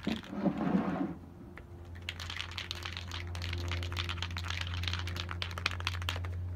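Aerosol spray-paint can being shaken, its mixing ball rattling in quick clicks from about two seconds in, after a brief handling clatter at the start.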